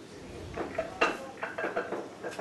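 Pool balls clacking against each other as they are gathered and set into a rack, with the sharpest click about a second in.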